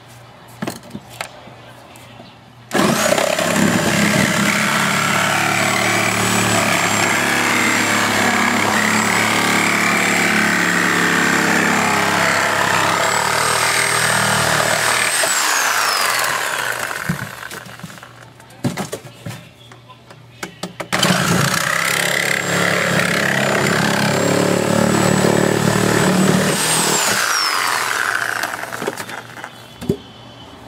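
A handheld electric power tool runs in two long bursts, about 13 seconds and then about 7 seconds, with a steady high whine that falls away as it spins down each time it is released. Short knocks of metal being handled come in the pauses.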